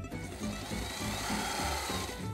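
A sewing machine running for about two seconds, a steady whirring that starts just after the beginning, over plucked-string background music.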